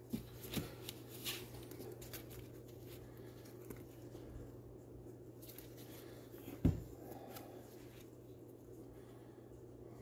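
Faint handling sounds of a sanding disc being fitted and pressed onto a random orbital sander's pad by gloved hands: small clicks and rustling, with one sharper knock about two-thirds of the way in.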